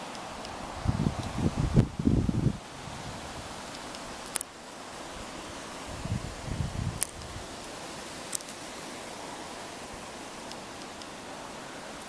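Outdoor ambience with a steady hiss, broken by two bursts of low rumble on the microphone, about a second in and again about six seconds in, and a few faint sharp clicks.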